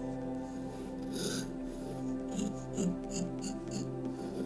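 Short strokes of a drawing pen scratching across paper: one about a second in, then a quick run of six or so short strokes in the second half. Soft, steady background music plays underneath.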